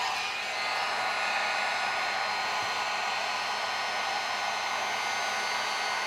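Handheld electric heat gun running steadily, its fan blowing a constant rush of air with a few faint, steady high tones over it.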